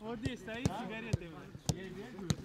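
A football being struck, four sharp thumps about half a second apart, over men talking in the background.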